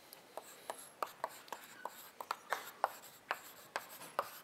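Chalk writing on a blackboard: a quick, irregular run of sharp taps and short scratches as letters are written, starting about half a second in.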